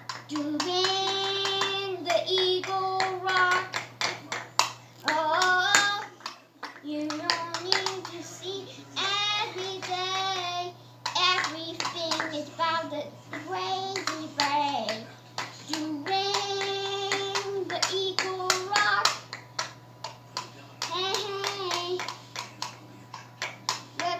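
A young girl singing in drawn-out held notes, with frequent light clicks of plastic toy pieces being handled on a wooden table and a steady low hum underneath.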